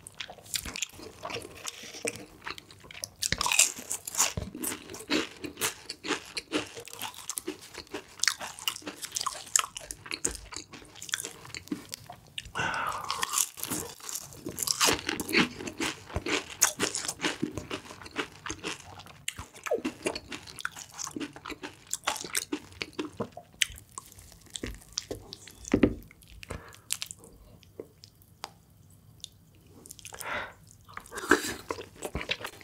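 Close-miked crunching and chewing of crispy fried chicken skin: a dense run of sharp crunches that thins to softer, quieter chewing over the last several seconds.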